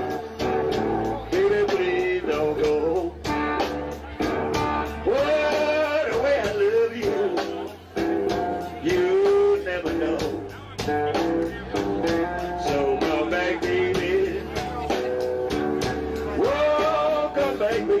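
Live blues band playing an instrumental break: a lead line of bent notes over bass and a steady drum beat.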